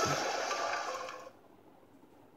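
Cartoon soundtrack from a small phone speaker: a transition sound effect with a few held tones, marking the start of a flashback, fades out over about the first second and a half, then near quiet.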